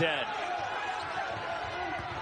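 Arena sound from a college basketball game: a steady crowd murmur with faint voices, and a basketball being dribbled on the hardwood court.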